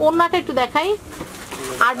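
A person's voice speaking, with a short pause about halfway through before talking resumes.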